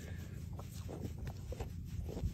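Faint rustling and soft scratching from a hand rubbing a newborn calf's hair, over a low rumble.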